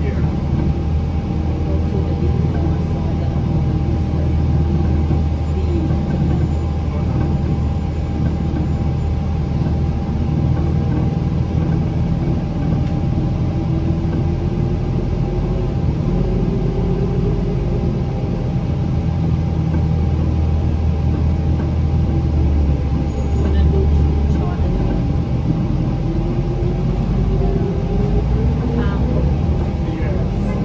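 Interior sound of a 2007 New Flyer C40LF city bus with its Cummins C Gas Plus natural-gas engine running as the bus drives, giving a steady low drone with a faint steady whine. Twice the engine note rises gradually as the bus accelerates, about halfway through and again near the end.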